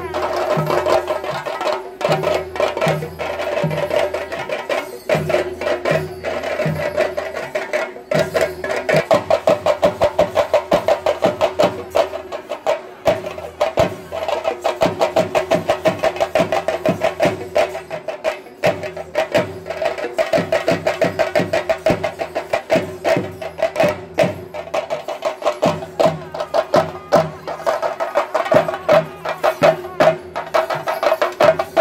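Kerala temple percussion ensemble of chenda drums beaten in fast, rolling strokes over a slower low beat, with a steady held tone running above them. The strokes grow denser and louder about a third of the way in, and again near the end.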